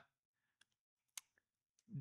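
Near silence with a few faint, brief clicks around the middle.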